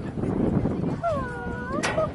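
Background murmur from the stands, then a drawn-out voiced call that dips in pitch and rises again, followed by a sharp clap just before the end.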